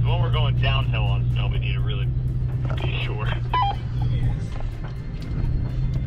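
Off-road vehicle's engine droning steadily low in the cabin while driving, with a person's voice over it in the first couple of seconds.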